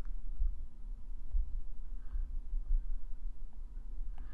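Low steady hum with no speech, and a couple of faint ticks in the second half.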